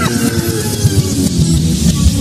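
Live pop-rock band music: a sliding tone falls in pitch right at the start, over a steady low pulsing rhythm.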